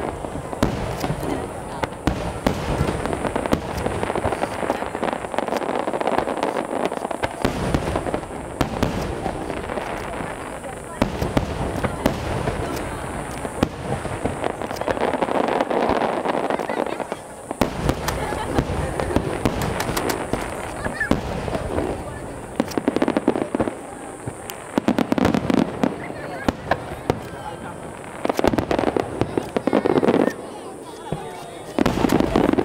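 Aerial firework shells bursting one after another in a continuous barrage of booms and crackles.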